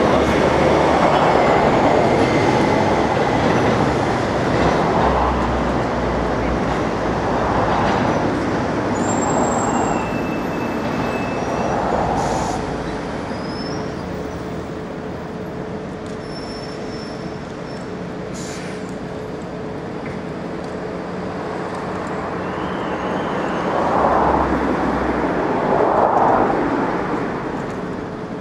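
Outdoor street noise: a steady rumble of passing traffic, swelling louder several times, most strongly at the start and twice near the end.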